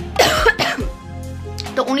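A woman coughs once, a short loud burst about a quarter of a second in, over steady background music; she starts speaking again near the end.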